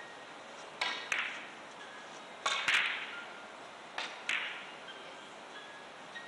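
Three pairs of sharp clicks, the two in each pair about a third of a second apart, each with a short ring: carom billiard balls being struck and clicking against each other on other tables in the hall.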